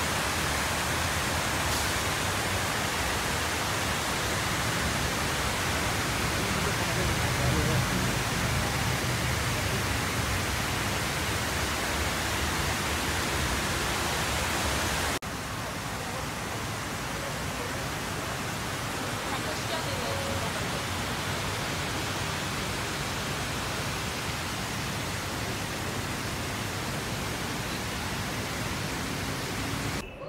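Steady rush of water falling down the stone walls of the 9/11 Memorial's reflecting pool into the basin. It drops suddenly in level about halfway through, then goes on steadily.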